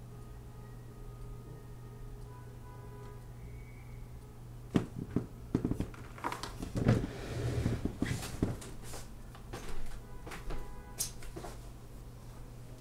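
A person getting up from a desk chair and moving about: a run of knocks, thuds and rustling starting about five seconds in and easing off near the end, over a low steady hum. Faint held tones sound in the first few seconds.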